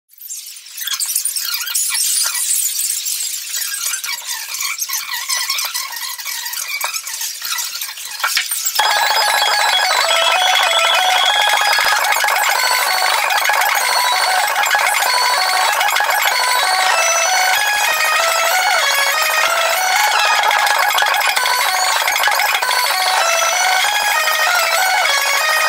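A rock band playing live, sounding thin with almost no bass, with stepping melodic notes. It comes in abruptly about nine seconds in, after a stretch of hissy noise with scattered clicks.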